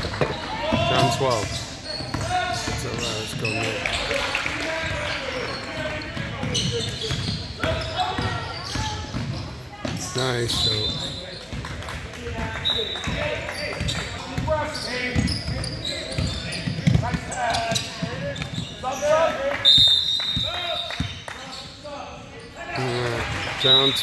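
Basketball game on a hardwood court: a basketball bouncing, several short high squeaks, and voices of players and onlookers calling out in a large gym.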